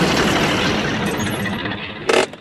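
Cartoon sound effect of a crane's machinery running as the crane moves away: a steady, noisy mechanical rattle that eases a little toward the end.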